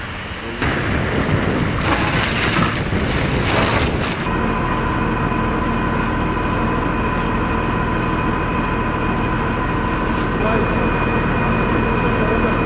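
Firefighting noise at a burning straw-bale stack: a loud rushing hiss from the fire hoses' water jets, then from about four seconds in a steady engine drone with a constant high whine from the fire engines pumping water.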